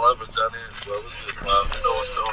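A bunch of keys jangling in a hand, amid short stretches of indistinct talk.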